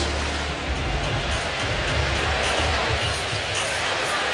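Short music sting of a TV sports broadcast's replay transition, over steady background noise.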